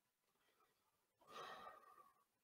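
A man's faint sigh, one breath out lasting under a second, a little past the middle; otherwise near silence.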